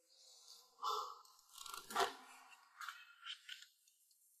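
Faint rustling and creaking of a sofa as a man shifts and leans back into it, with a sharper knock about two seconds in and a few small clicks after.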